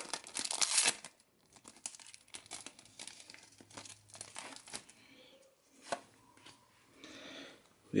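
Foil wrapper of a Pokémon card booster pack being torn open and crinkled, loudest in the first second. Then come quieter crinkles and light clicks as the cards are slid out of the wrapper.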